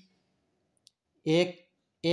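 A pause in a man's speech, broken by a single faint, short click about a second in; he then speaks one word.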